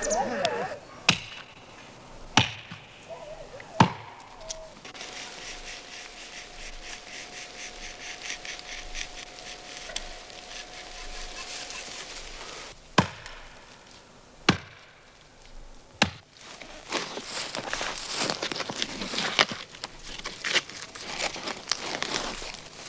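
Axe chopping into a standing Siberian pine trunk: six single sharp strikes, three over the first four seconds and three more later, each a second or more apart. Near the end, a dense crackling and rustling as birch bark is peeled from the trunk.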